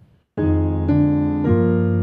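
Keyboard playing a run of sustained chords in parallel octave movement, starting about half a second in, the chord shifting roughly every half second.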